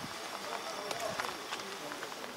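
Indistinct chatter of people talking in the background, with footsteps on asphalt as someone walks.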